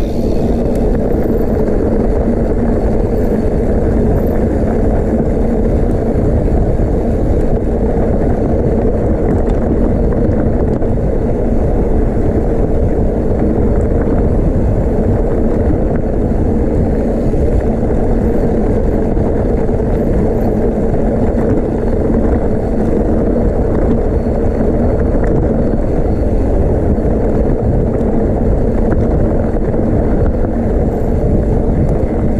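Mountain bike rolling fast down a dirt track, heard from a handlebar-mounted camera: a loud, steady rumble of tyres and bike rattle mixed with wind noise on the microphone.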